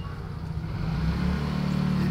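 A motor vehicle's engine running close by: a low, steady rumble that grows louder in the second half.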